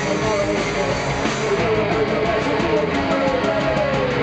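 Live punk rock band playing: electric guitars and bass with drums, loud and dense.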